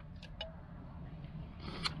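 A quiet pause: a steady low background hum, with a few faint small clicks early on and a short hiss near the end.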